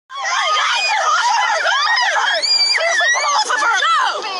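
Several young female voices screaming and yelling over one another, starting suddenly.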